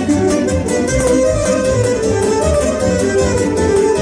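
Live Romanian party band playing an instrumental passage for a hora circle dance: a steady, even dance beat in the bass under a sustained melody line, with no singing.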